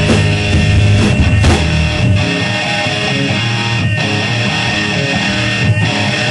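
Live rock band playing: electric guitars, bass guitar and drums, with several sharp drum and cymbal hits spaced a second or two apart.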